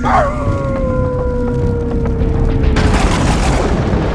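A long howl that swoops down sharply at the start, then holds and slowly falls for about three seconds, over a low rumbling bed with booms. A rush of noise comes in near the end.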